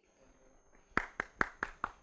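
Hand clapping in a small room: sharp, evenly spaced claps, about five a second, starting about halfway through.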